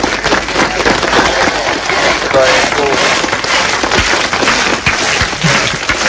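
Several people talking over one another and laughing loudly, with some clapping mixed in.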